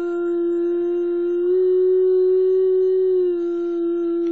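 A girl's singing voice holding one long wordless note. The pitch steps up a little about one and a half seconds in and drops back near the end.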